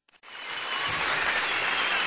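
Crowd applause that fades in just after a brief silence, then holds steady.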